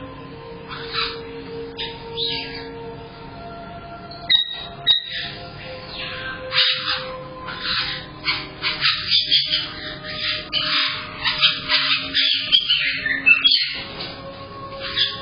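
Caique parrots calling with short, shrill squawks and chirps, sparse at first and growing busy and overlapping from about the middle, over steady background music.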